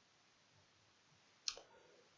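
Near silence, then a single short, sharp click about one and a half seconds in.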